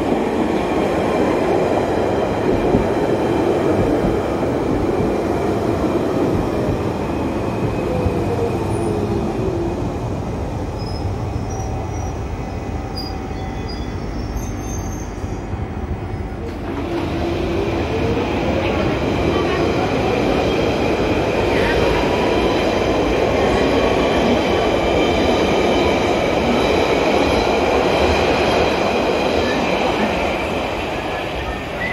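London Underground 1992 Stock Central Line train running into the platform. Its traction motor whine falls steadily in pitch over about ten seconds as it brakes. After a quieter pause, a train pulls away with the whine rising steadily in pitch as it accelerates, over rumbling wheel and track noise.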